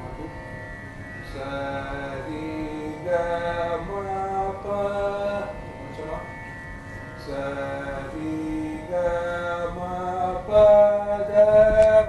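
A man singing Carnatic svara syllables as held notes that step from pitch to pitch, demonstrating the svarasthanas, the fixed pitch positions of the notes. He sings two runs with a short break about six seconds in, over a steady drone.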